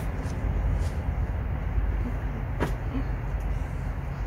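Steady low outdoor rumble with one sharp click about two and a half seconds in.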